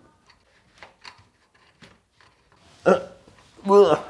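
Faint light clicks and taps from a plastic kitchen-unit leg being adjusted, then a man's short grunt about three seconds in and a longer strained groan of effort near the end.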